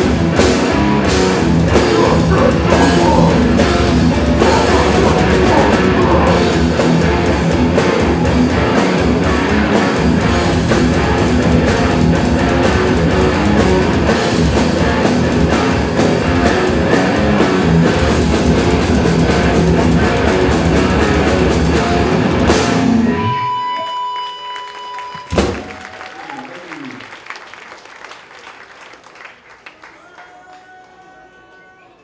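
Hardcore band playing live and loud, with distorted guitars, bass, drums and shouted vocals. The song ends about 23 seconds in: a steady high tone holds briefly, a single loud hit follows, and the amps ring out and fade.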